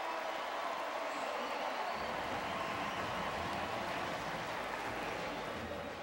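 Football stadium crowd cheering and clapping for a touchdown, a steady roar that fades near the end.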